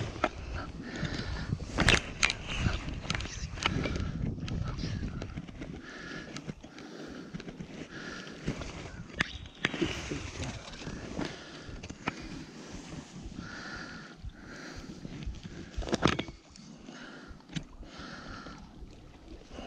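Handling noise as a rainbow trout is held in a landing net on rock and unhooked by hand: irregular scrapes, crackles and knocks, with louder knocks about two seconds in and again about sixteen seconds in.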